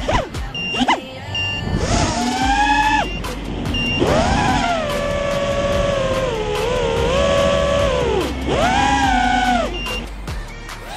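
Brushless motors of a 5-inch FPV racing quadcopter (2206 2350KV) whining, the pitch rising and falling with the throttle and held fairly steady for a few seconds in the middle, over background music.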